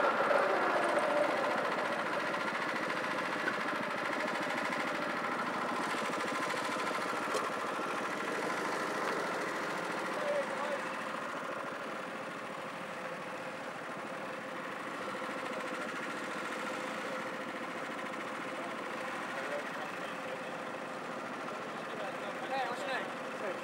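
Honda Pro-kart's single-cylinder four-stroke engine idling steadily, close to the onboard camera, easing off over the first few seconds as the kart slows and stops.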